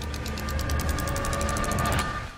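Rapid, evenly spaced ratchet-like clicking of a rotary control knob being turned, about a dozen ticks a second, over a low rumble and a steady tone that swell slightly and cut off at the end.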